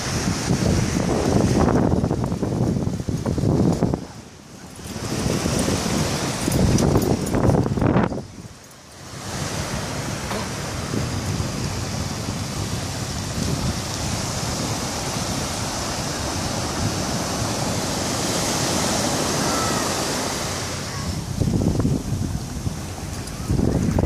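Wind gusting on the microphone over a steady hiss of ocean surf. The gusts drop away briefly twice in the first ten seconds and pick up again near the end.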